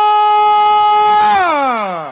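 A loud siren-like horn sound: one long, steady note that glides down in pitch over the last half-second or so.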